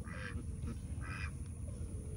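A horse sniffing at a person's hand: two short, breathy sniffs about a second apart.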